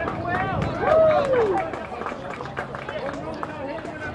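Soccer players shouting and calling to each other during play, several voices overlapping, with one long, loud call about a second in that rises and then falls in pitch.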